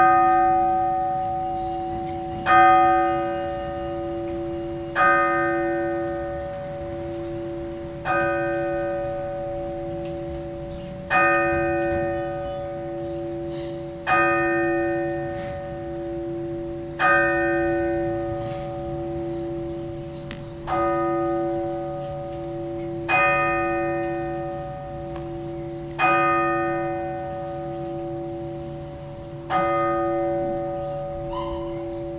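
A single church bell struck slowly and repeatedly, about once every three seconds, eleven strokes in all. Each stroke rings on and fades before the next.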